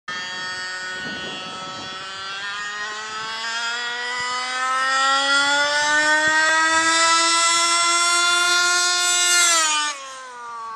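HPI Baja 1/5-scale RC car's two-stroke petrol engine running flat out on a speed run. Its pitch climbs steadily and it grows louder as it approaches, then the pitch drops sharply as it goes by near the end.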